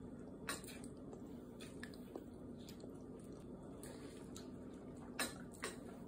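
Small dog chewing a piece of banana and licking its lips: faint wet mouth sounds with a few soft smacks, one about half a second in and two close together near the end.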